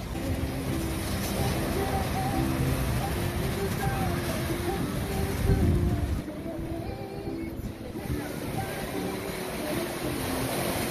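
Beach ambience: people's voices over a boat engine running steadily out on the water, with surf and wind noise. The sound drops and changes about six seconds in.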